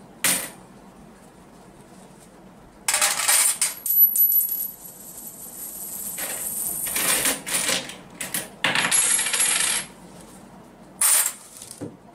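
Metal coins clinking and rattling together in several separate bursts, with a high metallic ring, as they are handled and added as weight to a small steel vessel.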